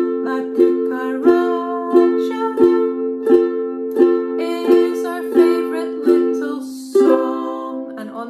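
Caramel ukulele strummed in an even beat of about one and a half strums a second, with a woman singing along. The strumming is on an F chord, and a strum about seven seconds in brings a new chord, the change to C.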